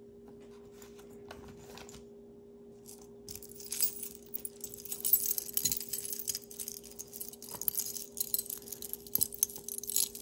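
Tangled metal costume jewelry (gold-tone chains and spike pendants) jingling and clinking as it is lifted and shuffled by hand. It starts about three seconds in, after a quiet stretch with only a faint steady hum.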